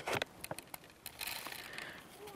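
Light scattered ticks and a soft rustle of small, dry fishing pellets being poured into a PVA bag and spilling onto a table.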